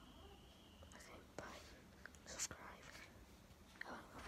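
Near silence: room tone with faint whispering in the middle and a couple of soft clicks.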